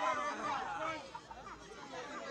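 Several people talking and calling out over one another, louder in the first second and then easing off.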